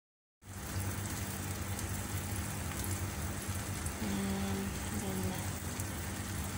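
Egg, tomato and onion frying in olive oil in a stainless steel pan: a steady sizzle, with a low steady hum beneath it.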